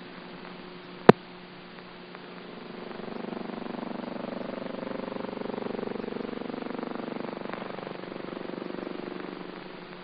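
A single sharp click about a second in, then a low droning hum with a rapid flutter that swells from about three seconds in and eases near the end, over a faint steady hum.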